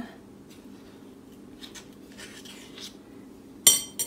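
Metal tablespoons scraping faintly through sticky dough in a bowl, then one sharp, ringing clink of a spoon against the bowl near the end.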